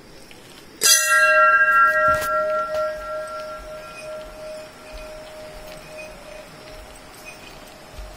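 A temple bell struck once, ringing out loud and clear and then fading slowly over several seconds, with a fainter knock a little over a second after the strike.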